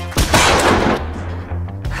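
A single shotgun blast just after the start, dying away over about a second, over background music.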